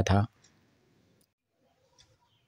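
A man's voice ends a word about a quarter second in, then near silence with only a very faint click.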